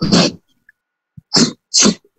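A man sneezing in short, sharp bursts: one dying away just after the start, then two in quick succession in the second half.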